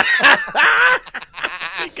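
Several men laughing together into close studio microphones, in choppy bursts with short breaks between them.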